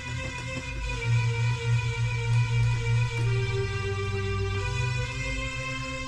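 Korg Pa-series arranger keyboard played by hand, sounding held notes of a chromatic melodic phrase. The pitch steps to new notes about three seconds in and again near five seconds.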